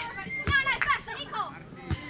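Shouting players during a beach volleyball rally, with two sharp hits of the volleyball being played, one about half a second in and one near the end.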